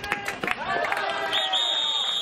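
Players' voices shouting on the field. About one and a half seconds in, a single long, steady, high-pitched whistle blast begins and is still sounding at the end.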